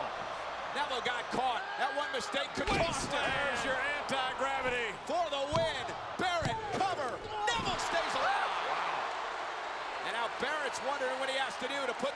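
A wrestler slammed onto the ring canvas with a Wasteland, heavy thuds of bodies on the mat, the loudest a little under three seconds in and another about five and a half seconds in, over an arena crowd's shouting voices.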